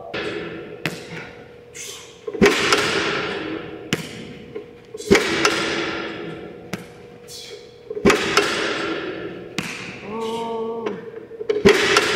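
A football striking a player's hands during catching drills: four loud thuds about three seconds apart with lighter knocks between, each ringing out with a long echo in a large indoor hall.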